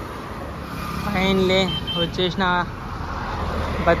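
Road traffic on a multi-lane highway: cars driving past with a steady rumble of engines and tyres, a little stronger near the end.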